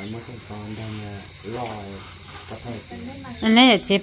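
A steady, high-pitched insect drone, with quieter voices talking over it and a louder voice near the end.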